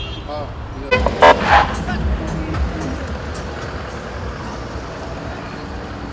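A vehicle horn sounds in a few short, loud blasts about a second in, over crowd chatter and street noise.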